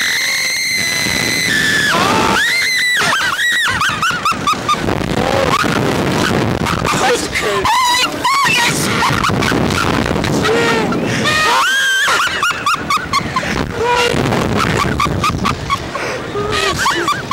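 Two riders screaming and shrieking while being flung on a slingshot ride: one long, high scream held for about a second and a half at the start, then a run of shorter shrieks and yells.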